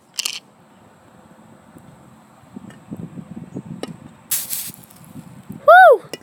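Water poured from a cup onto a small burning paper ball on concrete, putting the fire out, with a brief splashing hiss about four seconds in. A short voice-like call near the end.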